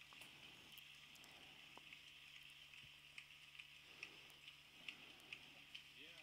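Near silence: faint, scattered hand claps over a low steady hum.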